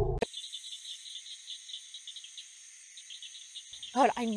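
Crickets chirping in a quick pulsing rhythm over a steady high insect buzz. A loud, low sound cuts off abruptly at the very start.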